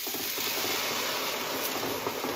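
Hot pot sizzling and bubbling as vegetable broth goes in on a low-oil sofregit of pumpkin and mushrooms: a steady, even hiss.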